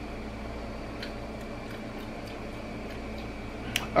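Indoor room tone: a steady low hum with faint hiss, a few faint ticks, and one sharp click just before the end.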